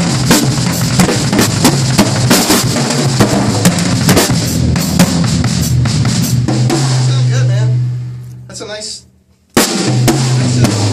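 Peavey Radial Pro 500 drum kit, fitted with used heads, played in a busy groove of bass drum, snare and toms under cymbal wash. About seven seconds in the hitting stops, a low drum rings on and fades, and the kit comes back in suddenly near the end.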